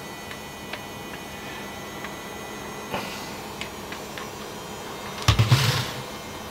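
Faint clicks and light scraping of a silicone spatula against a hand mixer's beaters and the batter bowl, with the mixer switched off. About five seconds in comes a louder, brief clatter as the hand mixer is set down on the worktop.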